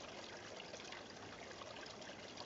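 A nearby creek running steadily: a faint, even rush of flowing water.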